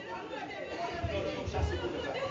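Low, indistinct murmur of several voices talking, with no single clear speaker.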